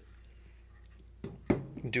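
A 3D-printed plastic R2-D2 ankle part set down on a desk: quiet room tone, then one sharp knock about a second and a half in.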